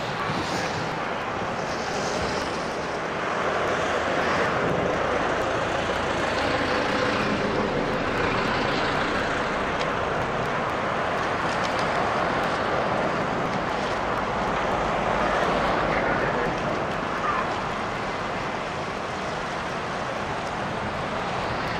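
Steady rushing outdoor noise that swells a few seconds in and eases off near the end.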